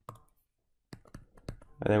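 A few light, separate clicks and taps from a stylus writing digital ink on a tablet screen, starting about a second in after a brief quiet spell.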